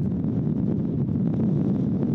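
Wind buffeting the microphone outdoors: a steady, low rumble with no voices.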